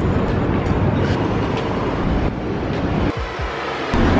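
Steady city street noise heard while walking along a sidewalk: traffic rushing past, heaviest in the low end, with a brief dip about three seconds in.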